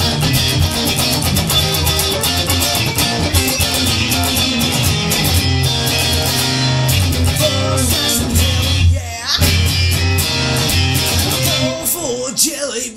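Rock instrumental passage on layered Fender electric guitars (Stratocasters and a Telecaster) over a steady bass line, with a short break in the playing about nine seconds in.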